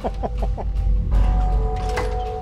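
A man laughs briefly in quick repeated breaths, over steady background music whose held tones shift to a new chord about halfway through.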